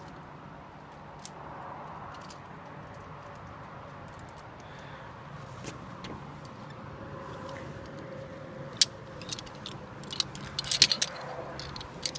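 Metal zipline harness hardware (carabiners and lanyard clips) clinking and jingling in a quick cluster over the last few seconds, over a faint steady hum.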